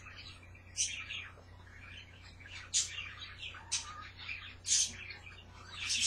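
Pet parrots chirping: about five short, high-pitched calls spaced a second or so apart, over a faint steady low hum.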